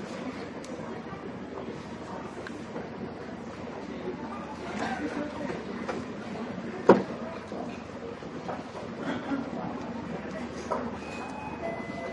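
Steady background din of a busy indoor public hall, with distant voices in it. A single sharp knock comes about seven seconds in, and a faint short electronic beep sounds near the end.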